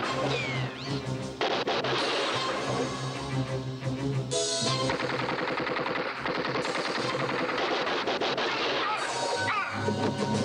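Action-film soundtrack: a music score mixed with rapid automatic gunfire.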